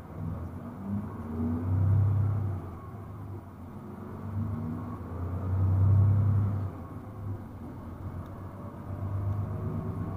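A shuttle bus's engine and road noise heard from inside the cabin as it drives through city traffic: a low rumble that swells about two seconds in, again around six seconds, and near the end.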